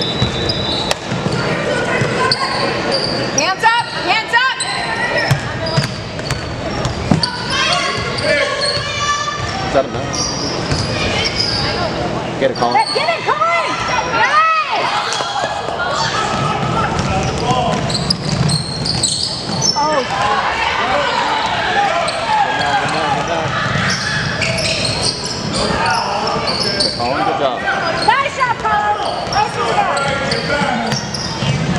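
Youth basketball game on a gym's hardwood court: the ball bouncing as it is dribbled and sneakers squeaking, under steady shouting and chatter from players and spectators.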